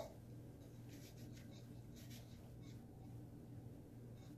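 Near silence: a short click at the start, then a few faint, soft scrapes of a plastic measuring spoon scooping baking powder from its can, over a low steady hum.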